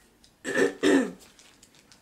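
A woman with a head cold giving two short coughs in quick succession, the first about half a second in.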